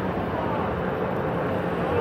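Steady outdoor street noise heard from a moving bicycle: a low rumble with people's voices in the background.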